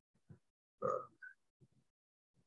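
A few short, faint vocal sounds from a man, a brief low murmur about a second in with a couple of smaller clipped bits around it, cut off abruptly between them.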